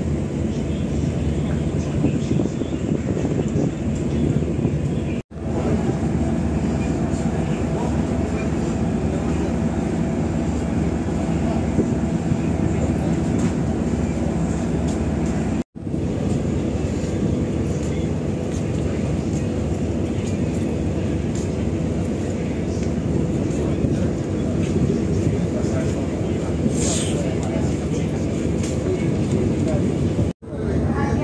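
Steady low rumble of a large passenger ship's engines under way, heard from its open deck and mixed with wind on the microphone. It cuts out abruptly twice, and a brief high sound comes near the end.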